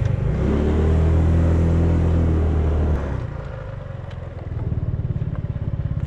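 Motorcycle engine running under way, its pitch falling slightly as it slows. About three seconds in the sound drops away, and the engine settles to a steady idle as the bike comes to a stop.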